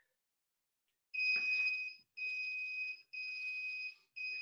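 Interval workout timer beeping the end of a work round: three long, high beeps about a second apart, the first the loudest.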